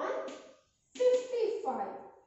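Speech: a high-pitched voice speaking in two short phrases, the second starting about a second in.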